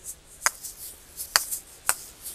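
Asalato (kashaka), two seed-filled balls on a cord swung in one hand: three sharp clacks as the balls strike each other, the last two closer together, with the soft shaker rattle of the seeds in between.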